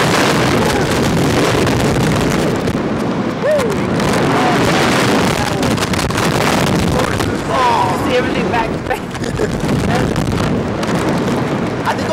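Wind rushing over the microphone of a camera mounted on a Slingshot reverse-bungee ride capsule as it swings through the air, a loud steady rush. Riders' laughs and yelps break through it a few times.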